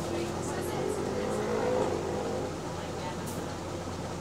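A double-decker bus's engine and drivetrain, heard from the upper deck, humming steadily as the bus drives along. A whine rises in pitch over the first two seconds as the bus gathers speed, then eases off.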